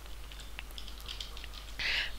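A few faint, short keyboard clicks as characters are typed, over a low steady electrical hum.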